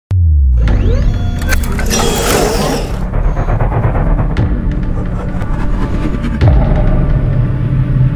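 Channel intro music with a heavy bass and sound effects. A noisy swell comes about two to three seconds in, and a low hit about six and a half seconds in.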